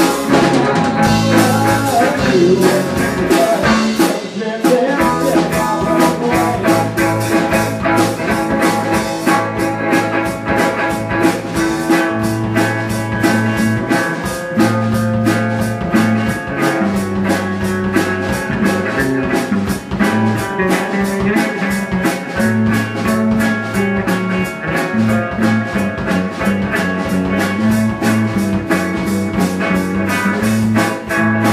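Live rock band playing: electric guitar through an amp, electric bass and a drum kit keeping a steady, fast beat, with the bass line moving between low notes.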